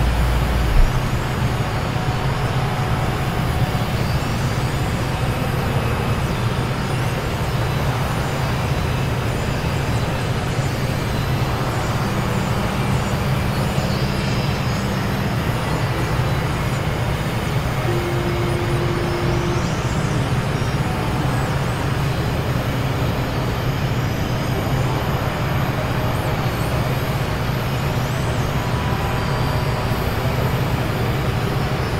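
Experimental synthesizer noise drone: a dense, steady wash of noise over a low hum, with a deep rumble cutting off about a second in. Two brief held low tones sound midway, and faint high whistles glide upward.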